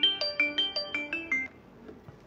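A phone ringtone: a quick melody of short pitched notes, about five a second, that stops about one and a half seconds in.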